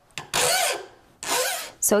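Two strokes of a coarse, zero-cut hand file rasping across the metal face of a prong pusher, each about half a second long. The file is truing up the face and bringing down its rough corners.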